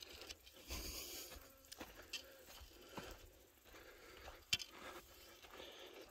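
Faint footsteps on a dry dirt path, with scattered soft crunches and scrapes and a sharper click about four and a half seconds in.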